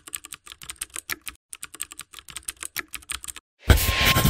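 Computer-keyboard typing sound effect: rapid key clicks in two runs with a short break about a second and a half in, stopping shortly before the end. Music comes in loudly just before the end.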